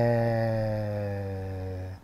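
A man's voice holding one drawn-out hesitation vowel on a steady low pitch, slowly fading and stopping just before the next words.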